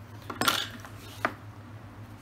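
Two light metallic clinks of small hand tools handled on a workbench as a hacksaw blade is put aside and a hobby knife taken up, one about half a second in and a fainter one a little after a second.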